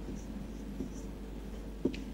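Marker pen writing on a whiteboard: faint strokes, with a short click near the end.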